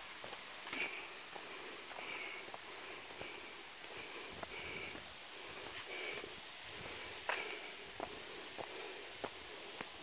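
Soft footsteps on a dirt path, a few scattered steps mostly in the second half, over faint outdoor ambience with short high chirps every second or so.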